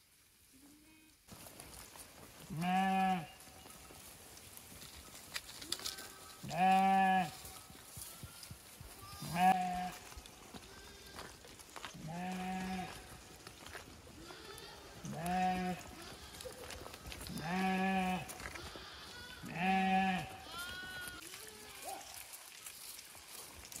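Sheep in a moving flock bleating: one loud, level baa roughly every two to four seconds, about seven in all, with fainter bleats from other sheep in between.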